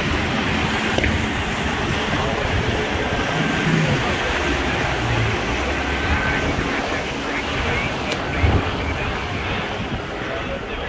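Motorboats running past at speed, including a Coast Guard response boat and a jet ski, with their wakes washing and wind buffeting the microphone as a steady noisy rush.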